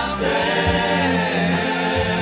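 A mixed choir of men's and women's voices singing long held notes in harmony.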